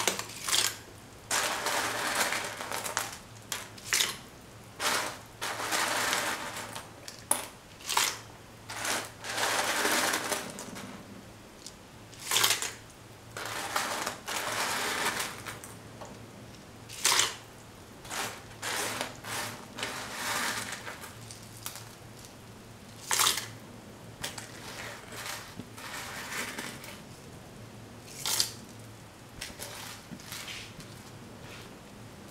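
Rice pasta being stirred in a pot of boiling water: irregular scraping and splashing bursts, with a sharp knock every few seconds.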